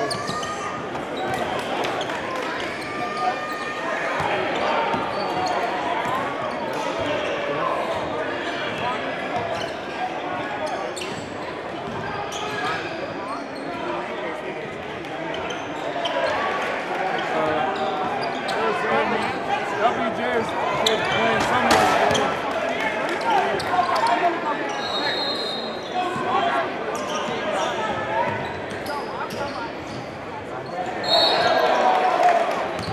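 Live basketball game in a gym: a basketball bouncing on the hardwood floor, with a steady hum of crowd chatter and players' voices echoing in the hall.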